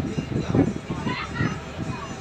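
Indistinct background chatter of several people, with a higher-pitched voice calling out about a second in.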